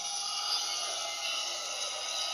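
Animated film soundtrack playing from a screen: a steady, hissy wash of sound, strongest in the upper range, with no clear voice or tune.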